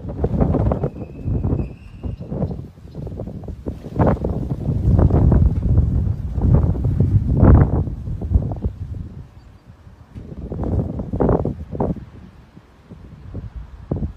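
Wind buffeting a phone microphone, coming in uneven gusts that rise and fall every second or two, heaviest in the low range.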